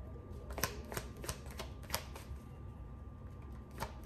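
A deck of tarot cards being shuffled by hand: a run of sharp card snaps and clicks, bunched in the first half, with one more near the end.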